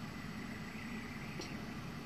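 Quiet room tone: a faint steady low hum and hiss, with one tiny tick about a second and a half in.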